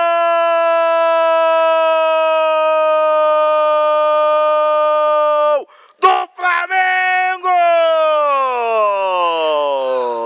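A man's drawn-out 'goool' cry in the Brazilian commentator style: one loud note held for about six seconds, a few short shouted syllables, then a second long call that slides down in pitch and trails off.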